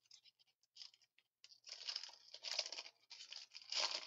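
Foil trading-card pack wrapper torn open by hand, crinkling, with louder tearing bursts about one and a half seconds in, again a second later, and near the end.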